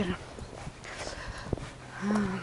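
Footsteps crunching and clicking over broken slate shards, an irregular series of short knocks.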